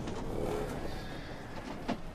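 A single short bleat from a sheep- or goat-like farm animal about half a second in, over a low rumbling background, then a sharp knock just before the end.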